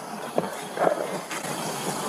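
Steady hiss of body-camera background noise, with a sharp click about half a second in and a few fainter knocks and rustles after it.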